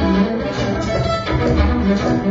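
Violin bowed live in a dense, continuous improvised passage, with shifting notes and deep low tones sounding underneath.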